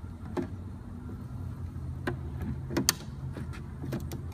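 A few sharp plastic clicks and taps from the waterproof radio's faceplate and media compartment cover being handled, over a steady low hum.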